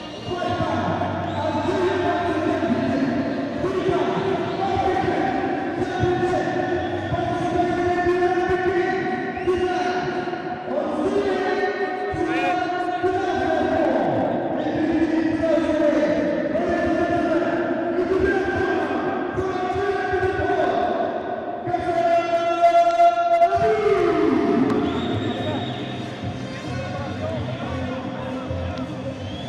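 Arena music with a thudding beat and a voice held in long, drawn-out notes, over crowd noise in a large hall during the boxers' ring introductions.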